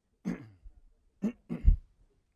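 A man's short laugh, then two brief throat-clearing sounds, the last the loudest.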